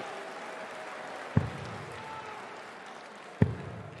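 Two darts striking a Winmau bristle dartboard about two seconds apart, each a short sharp thud, over the steady murmur of a large arena crowd.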